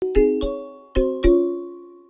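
A short logo jingle of four notes struck on mallet percussion, in two quick pairs, each note ringing on and fading away.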